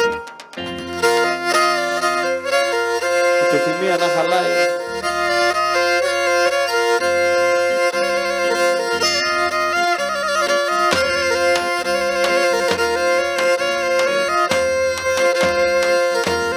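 Live Pontic Greek folk dance music: a bowed fiddle-like melody, typical of the Pontic lyra (kemençe), playing over a steady drone, with drum and keyboard backing. The music drops out for a moment right at the start, then runs on without a break.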